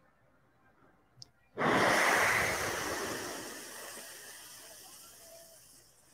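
A long breathy exhale or sigh close to the microphone: a soft hiss with no pitch that comes in suddenly and fades away over about four seconds, after a faint click.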